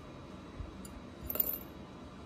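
Two small 18K yellow gold rings clinking against each other between the fingers: a faint tick just under a second in, then a brief rattle of light metallic clicks soon after.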